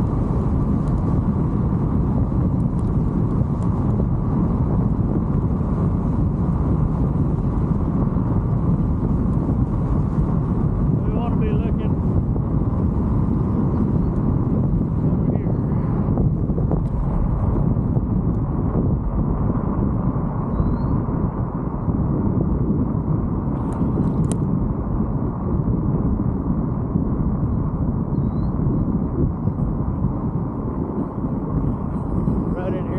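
Steady wind rush on the microphone of a camera riding on a moving bicycle, mixed with the rumble of its tyres rolling over cracked asphalt.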